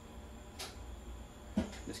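Quiet room tone with a steady low hum, and one brief soft hiss about half a second in. A man's voice starts near the end.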